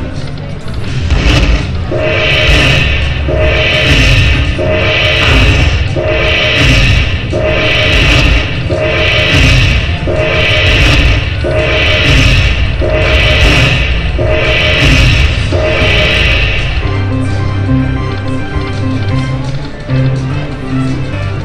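Aristocrat Dragon Link slot machine counting up its bonus win: the same bright chime figure repeats a little faster than once a second as the coin values are added to the win meter. About sixteen seconds in it changes to a different, lower tune. A low rumble runs underneath.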